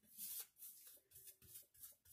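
Faint brushing: a flat brush stroking thinned Mod Podge sealer across the resin drills of a diamond painting, a quick series of soft strokes.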